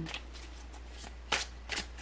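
Tarot cards being handled as a card is drawn from the deck: a few short card slides and flicks, the sharpest a little past the middle.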